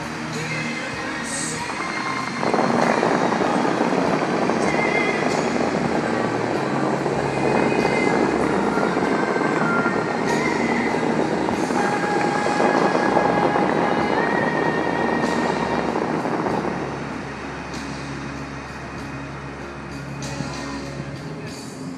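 Musical fountain show: a loud rush and spray of water from the fountain jets comes in suddenly about two seconds in, holds, and dies away near the end, over the show's recorded music.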